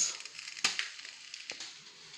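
A single sharp clink about half a second in, then a fainter tick near the end: a glass pot lid with a metal rim being set down on a cooking pot that holds aluminium moi moi tins.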